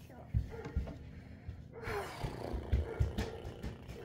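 A toddler's wordless vocalizing, with a pitched sound that falls a little before halfway, mixed with a few dull low thumps.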